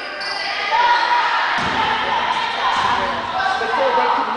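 A basketball bouncing on a hardwood gym floor, a thud about a second and a half in, over spectators' voices.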